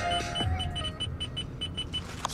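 Car head unit giving short, high beeps in quick succession, about six a second, as the audio volume is stepped down, while music from the car's speakers fades away within the first second.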